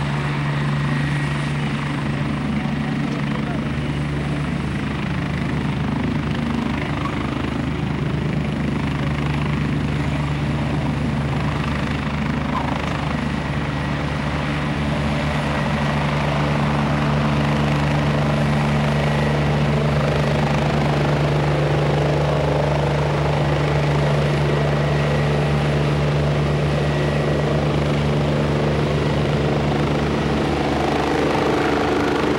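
Medical helicopter's turbine engines and rotor running steadily on the ground, then growing louder as it lifts off about halfway through and climbs away.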